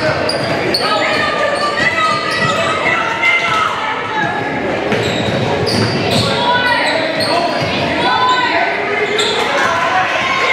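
Basketball being dribbled on a hardwood gym floor during play, with players and spectators calling out, all echoing in a large gymnasium.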